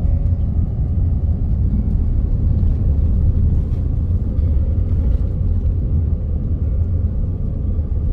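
Steady low rumble of a RAM pickup truck driving on a dirt road, heard from inside the cabin: engine and tyre noise together.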